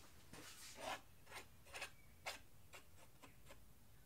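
Palette knife spreading black acrylic paint around the edge of a canvas: faint scrapes, a longer stroke just before a second in, then a run of short quick strokes.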